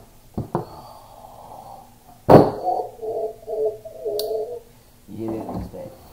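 Cardboard shipping box and its inner packaging being handled: two light knocks, then a loud thud about two seconds in, followed by a couple of seconds of squeaky rubbing.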